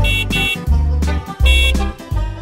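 Instrumental children's song backing with a pulsing bass beat. Over it come three short cartoon bus-horn toots, two quick ones at the start and one about a second and a half in.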